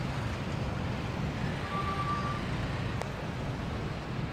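Steady rumble of distant city traffic heard from a high rooftop, with a faint short high tone about two seconds in.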